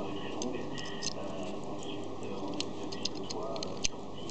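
A few irregularly spaced sharp clicks, the loudest just before the end, over background voices.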